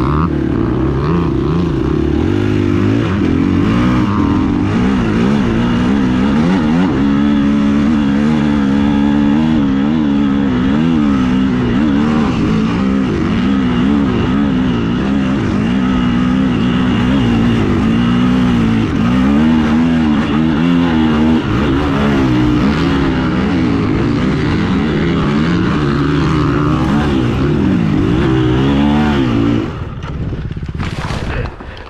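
Dirt bike engine heard up close from an onboard camera, its revs rising and falling over and over under the rider's throttle across sand and up a steep hill climb. Near the end the engine sound drops away suddenly.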